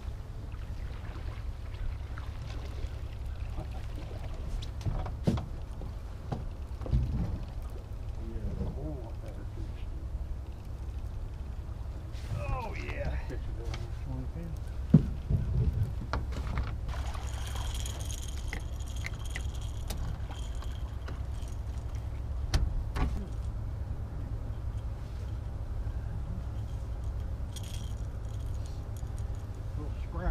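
Steady low wind rumble on the microphone, with scattered knocks and rattles of fishing tackle and fish being handled in the boat, one sharp knock about halfway through, and faint voices now and then.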